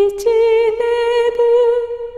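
A woman's solo voice singing a slow Japanese lullaby unaccompanied, in long held notes: one note, then a step up to a higher one about a quarter second in.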